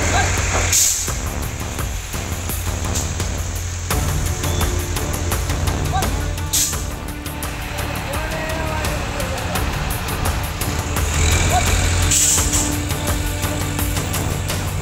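A steady low rumble of heavy vehicles, with three brief hisses about a second in, halfway through and near the end, over background music.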